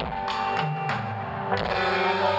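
Live band playing an instrumental passage: electric guitar to the fore, with drum and cymbal hits.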